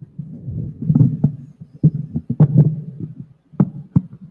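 Handling noise from a microphone being worked in its clip on a floor stand: dull rumbling thumps with about half a dozen sharp clicks and knocks. The microphone is loose and won't stay put, described as 'muito molinho' (very floppy).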